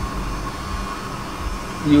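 Steady background hum and hiss, with a low drone and a faint steady high tone.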